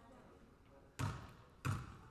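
A basketball bounced twice on a hardwood gym floor, about a second in and again near the end: a free-throw shooter's dribbles before the shot.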